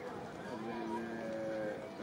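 A man's voice calling out one long drawn-out note, held level on one pitch for about a second, over background murmur.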